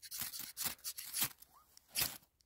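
Ferro rod being scraped hard with a striker, a series of short, sharp rasps that throw sparks onto fatwood shavings, which catch alight near the end.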